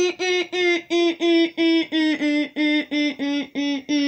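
A voice rapidly repeating one short sung syllable, about four times a second, its pitch slowly sinking.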